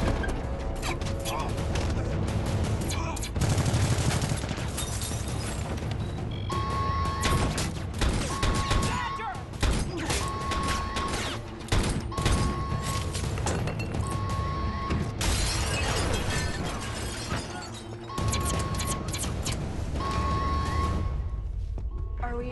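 Film gunfight: rapid, irregular bursts of automatic gunfire over dramatic music. From about six and a half seconds in, a security alarm repeats a single beeping tone, about one second on and one off, signalling a breach of the facility.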